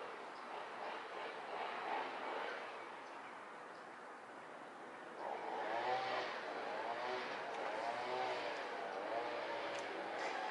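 Steady background traffic noise, with faint indistinct voices starting about five seconds in.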